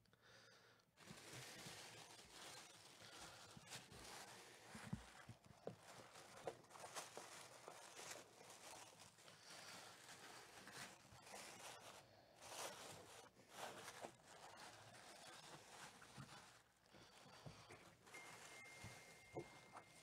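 Faint rustling of tissue paper as hands rummage in a paper-lined wooden box, with a few light knocks of handling. A faint steady high tone comes in near the end.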